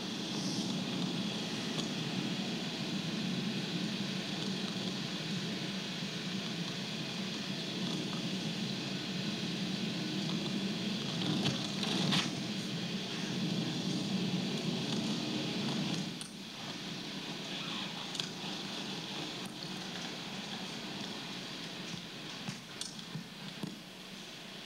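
Steady car engine and road noise inside a moving car, heard through the playback of a videotaped drive. It drops somewhat about 16 seconds in, with a few faint clicks.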